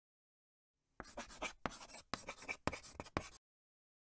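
Chalk scratching on a chalkboard in about five quick strokes, starting about a second in and stopping well before the end.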